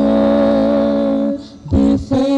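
Worship song: singing voices hold one long note over acoustic guitar, break off after about a second and a half, and come in again on a new note near the end.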